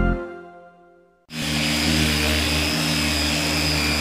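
Theme music fades out in the first second. After a brief silence, a random orbital sander starts abruptly and runs steadily with a thin high whine, sanding the cedar planking of a wooden boat hull.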